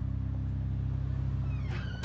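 A steady low hum, engine-like, that stops abruptly near the end.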